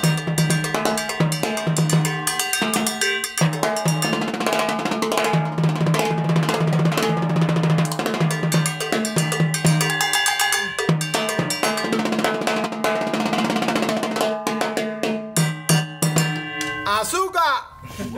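Salsa percussion: a cowbell and drums playing a driving Latin rhythm over a salsa backing with a repeating bass line. Near the end the beat stops and a brief swooping sound follows.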